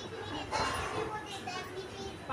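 Several young children's voices, fairly quiet, quarrelling among themselves.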